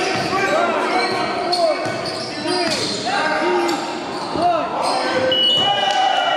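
Basketball shoes squeaking on a gym floor as players cut and stop, with the ball bouncing and players calling out in a large hall. A steady high whistle tone starts about five seconds in.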